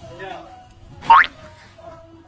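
Cartoon 'boing' sound effect: one quick rising whistle-like glide about a second in, over faint background sound.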